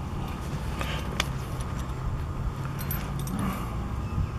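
Steady low wind rumble on the microphone, with a few light clicks and clinks, the sharpest about a second in.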